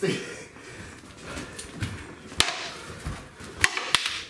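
Sharp clacks of stick-fighting weapons striking: one about two and a half seconds in, then two in quick succession near the end.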